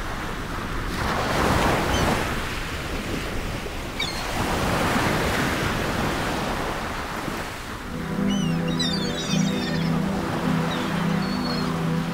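Ocean surf: waves breaking and washing in, swelling about a second in and again around four seconds in. About eight seconds in, a low steady music drone comes in over the surf, with short high chirps above it.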